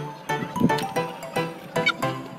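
Background music: a light tune of short pitched notes, about four a second, with a steady beat.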